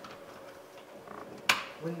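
A plastic wiring-harness connector snapping into a power door switch panel: one sharp click about one and a half seconds in, with faint handling rustle before it.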